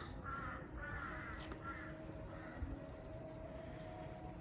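Crow cawing, about four short calls in quick succession over the first two and a half seconds, with a faint steady hum underneath in the second half.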